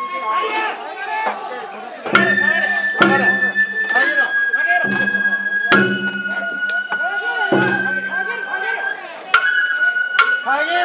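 Sawara-bayashi festival music from a float's hayashi ensemble: a bamboo flute holds long high notes that step down in pitch, over irregular drum and metal gong strikes about once a second.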